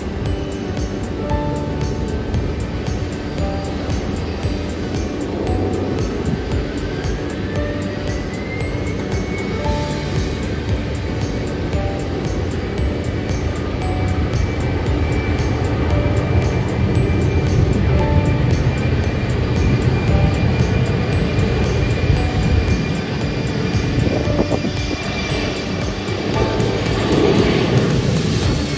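Background music over the steady noise of jet airliners at an airport. About six seconds in, a jet engine's whine climbs in pitch over a few seconds, then holds steady for most of the rest.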